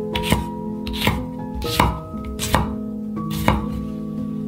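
A kitchen knife chopping food on a cutting board: five separate cuts, roughly three-quarters of a second apart, under steady background music.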